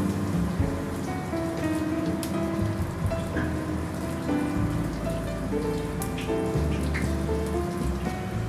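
Commercial deep fryer oil sizzling steadily with a fine crackle, under soft background music.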